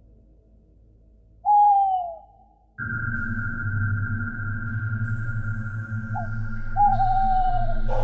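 Eerie horror soundtrack. About one and a half seconds in, a single loud tone falls in pitch. Near three seconds a steady drone starts suddenly, with a high held note over a low hum, and a second falling tone comes near the end.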